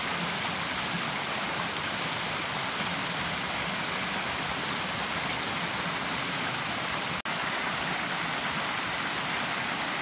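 Small woodland stream rushing steadily over rocks, with a momentary dropout in the sound about seven seconds in.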